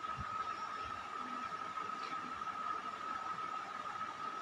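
Steady background hiss with a faint, even high-pitched whine running through it, and no distinct events.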